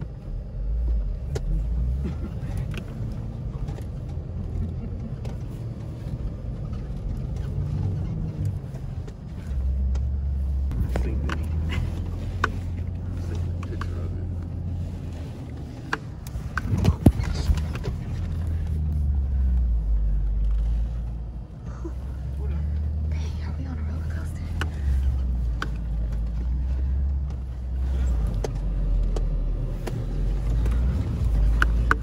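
SUV engine heard from inside the cabin while dune bashing over sand, a deep rumble whose speed steps up and down as the driver works the throttle. Knocks and rattles from the jolting vehicle come through, the loudest about halfway through.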